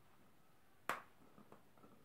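One sharp plastic click a little under a second in, then a few faint light ticks, as a white plastic chemical jar is handled over the weighing cup.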